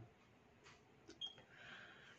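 Near silence: room tone, with one faint brief tick a little past the middle.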